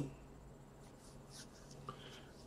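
Near silence: faint room tone, with a tiny click near the end.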